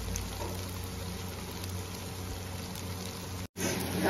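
Tomato-onion masala sizzling steadily in oil in an iron kadai as it is fried down, the oil starting to separate. The sound drops out briefly about three and a half seconds in.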